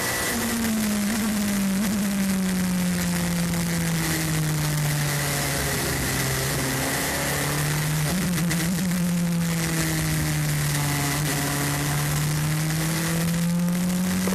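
LMP2 prototype race car's engine running at low revs while the car rolls slowly. Its note sinks gradually over the first several seconds, holds low, then climbs back up slowly through the second half. A faint steady high whine sits above it.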